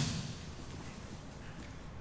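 A sharp thump just before fades out at the start, then low steady room noise with a few faint soft knocks as two grapplers shift their bodies on a training mat.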